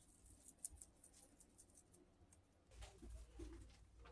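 Near silence: faint, light clicks of a plastic action figure and its staff being handled, then a low rumble with a few soft knocks about three seconds in.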